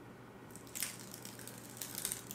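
Faint rustling and crinkling as a cheap stick-on fake mustache and its paper backing are handled and peeled apart, with a few soft crackles about halfway through and again near the end.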